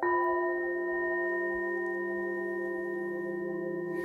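A singing bowl struck once, ringing with several steady overtones that fade only slowly; it is struck again at the very end.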